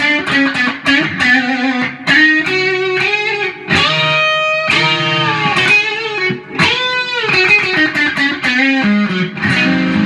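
Electric guitar through a Fender Mustang amp with light overdrive: a Korean-made Epiphone Les Paul Custom on the middle pickup setting, its Gibson 496R neck and 500T bridge humbuckers together with all controls on full. Single-note blues lead lines with bent notes around the 4- and 7-second marks, and notes held so they sustain really well.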